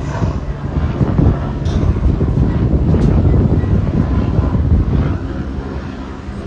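Wind buffeting a phone's microphone: a loud, fluttering low rumble.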